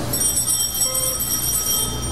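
Altar bells ringing continuously, a shimmering cluster of several high bell tones, rung at the elevation of the consecrated host during the Mass.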